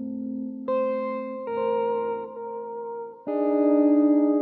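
Electric jazz guitars playing slow, sustained chords with a chorus and echo effect. New chords are plucked three times; the last and loudest comes near the end and rings on with a wavering level.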